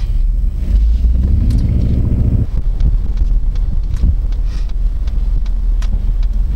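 Low road rumble and wind noise from an Airstream travel trailer rolling under tow, with the tow truck's engine humming low in the first couple of seconds and scattered light rattling clicks.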